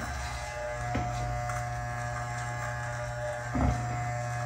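Corded Andis T-Outliner hair trimmer running with a steady buzzing hum as its blade shaves the top of a bald head.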